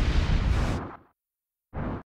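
Transition sound effect under an animated quarter-break graphic: a heavy, noisy hit with a deep low end that fades out within about a second. A half-second of silence follows, then a short second burst just before the end.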